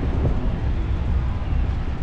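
Wind buffeting the camera's microphone, a steady low rumble, with a faint voice briefly in the background.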